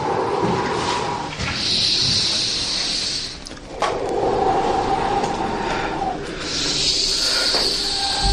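A man breathing heavily and raggedly in distress: long drawn breaths of about two seconds each, a lower groaning sound alternating with a higher rasping hiss.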